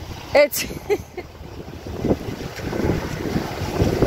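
Wind buffeting the camera microphone in low rumbling gusts that grow louder over the last two seconds, with a short spoken syllable about half a second in.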